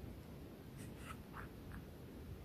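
Faint handling of leather wallets: a few soft rubs and light taps about a second in as they are set down on a table, over a low steady background hum.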